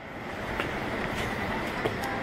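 Rushing vehicle noise that grows steadily louder, like something approaching or passing close by.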